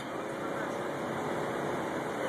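Steady city street noise at night: a low hum of traffic with faint distant voices.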